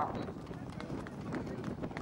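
Racehorses galloping past on grass turf, their hoofbeats coming as a quick irregular run of dull thuds.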